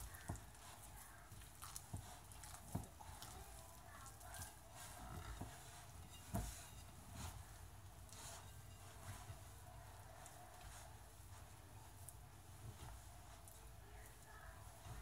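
Faint hand-mixing of pizza dough in a glass bowl: soft rubbing and squishing with a few light knocks, the loudest about six seconds in.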